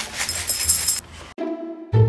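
About a second of rustling, sizzling kitchen noise as taco seasoning is shaken from its packet into a pan of beef and rice. It cuts off suddenly and background music starts.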